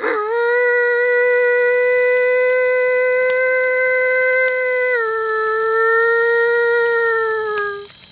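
A single long, wolf-like howl held at one steady pitch for about five seconds, then stepping down slightly and holding lower before trailing off near the end.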